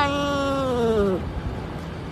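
Domestic cat's long, drawn-out meow, held at a steady pitch and then sliding down as it ends about a second in.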